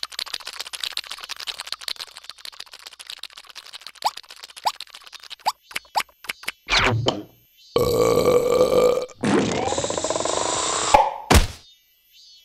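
A cartoon larva lapping up a puddle of spilled purple juice with rapid wet slurps. Then come louder cartoon sound effects: a blaring pitched sound, a hissing stretch with sliding tones, and a sharp hit near the end.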